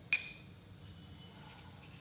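A single sharp clink of a small steel bowl knocking against metal, ringing briefly before it dies away.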